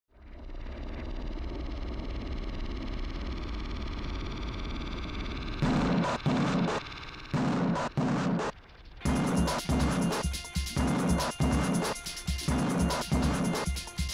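Film soundtrack music: a sustained droning chord fades in, then a steady drumbeat starts about six seconds in and grows fuller about nine seconds in.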